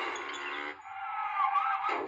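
A cartoon's car sound effect, a steady noisy running sound with a wavering higher tone in the second half, over the soundtrack music, played through a laptop's small speakers.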